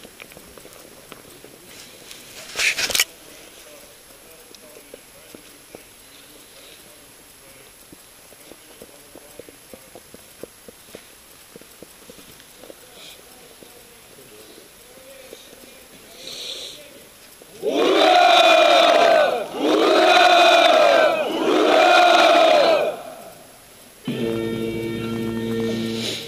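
A formation of soldiers shouting a triple hurrah, "Ura!", as three long drawn-out shouts in a row, over a low crowd murmur. About two seconds later music starts: the national anthem.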